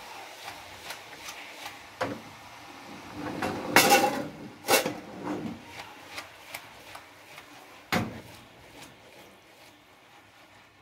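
Metal saucepan of cooked spaghetti shaken and tossed on a gas stove's grate, giving a few knocks and clatters: the loudest about four seconds in, a single one near eight seconds.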